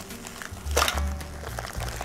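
Background music, with one short sharp sound a little under a second in as the twisted neck of a cellophane bag is pushed down into the slot of a manual tape bag sealer.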